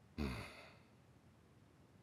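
A man's single short sigh: a sudden breath out, voiced at first, fading away within about half a second.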